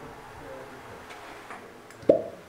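Glass spice jars being handled and set down on a windowsill: a few faint light taps over a quiet kitchen background.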